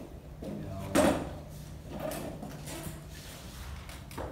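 A folding chair pulled across a wooden floor and sat on, with one sharp, loud knock about a second in and a smaller clatter about a second later.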